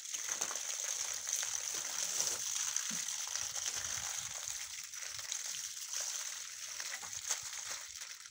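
Water pouring from a plastic watering can's spout and splashing against brickwork freshly coated with water-repellent sealer, a steady splashing that tails off at the end.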